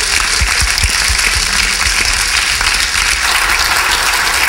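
Audience applauding, an even, sustained clapping that holds steady throughout.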